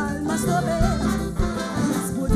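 Live calypso music: a singer sings into a microphone over a band with a steady low beat.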